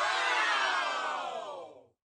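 A sound effect laid over the ending: a dense, crowd-like cry of many voices that rises briefly and then slides down in pitch for about two seconds before fading out.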